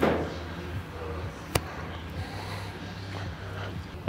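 Driving-range background: a steady low hum, with a short noisy burst right at the start and a single sharp click about a second and a half in.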